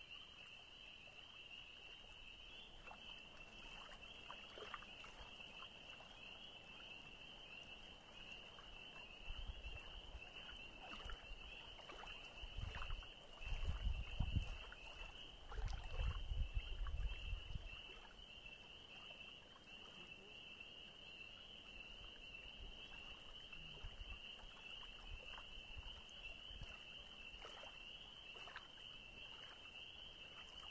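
Quiet lakeshore ambience: a steady high-pitched chorus runs throughout, with faint small ticks of water lapping on a sand beach. Wind buffets the microphone in low rumbles from about a third of the way in until just past the middle, the loudest part.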